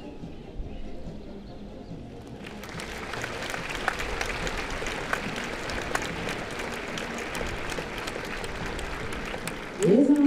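Audience applauding: the clapping starts about two seconds in and rises into a steady spread of many hand claps.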